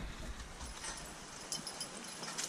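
A pair of Percheron draft horses walking in harness on a wet, muddy trail: faint soft hoof steps and a few light knocks, clearest about a second and a half in, over a steady low hiss.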